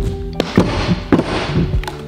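Stunt scooter's wheels rolling on a plywood halfpipe, with a few sharp knocks as the scooter hits the ramp, over background music.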